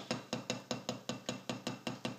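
Drumsticks tapping a fast, even single-stroke rhythm, about eight strokes a second, on the soft red rubber side of a Vater drum practice pad: steady-tempo speed practice.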